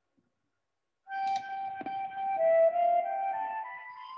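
Instrumental hymn accompaniment starting about a second in: a soft, flute-like melody of held notes stepping upward, with one click part-way through.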